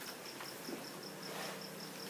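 Faint insect chirping: a steady high-pitched pulse repeating about seven times a second, over quiet room tone.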